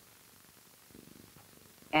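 Near silence: a pause in dialogue with faint room tone and soundtrack hiss, and a brief faint low sound about a second in. Speech resumes at the very end.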